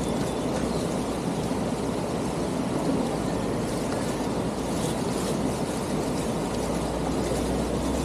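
Steady rushing of a fast-flowing stream running past, an even noise that holds at one level throughout.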